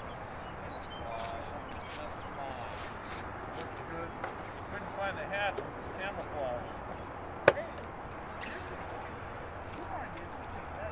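Faint, intermittent voices of people talking nearby over steady outdoor background noise, with one sharp click or knock about seven and a half seconds in.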